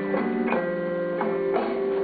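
Blues band playing live, guitars to the fore: a few picked notes, about four, ring on over the band's backing, with no singing.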